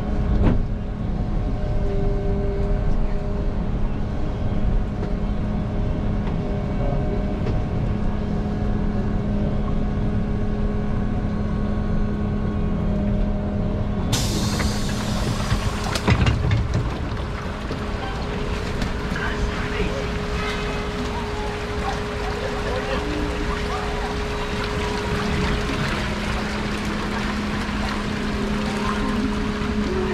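Inside a city bus driving through water on a flooded street: a steady electrical or mechanical hum over the rumble of tyres and water. About fourteen seconds in a sudden hiss cuts in and stays, as the doors open at a stop and the street's noise comes in.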